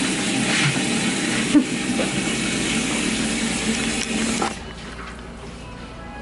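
Salon shampoo-basin hand sprayer running, water spraying onto hair and splashing into the sink. It cuts off suddenly about four and a half seconds in.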